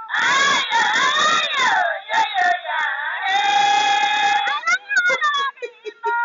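High-pitched human screaming: a loud sliding cry, then a long steady held shriek in the middle, breaking into short choppy cries near the end.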